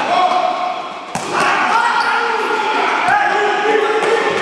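Futsal being played in an echoing sports hall: players' voices calling out, with sharp ball kicks about a second in and again near three seconds.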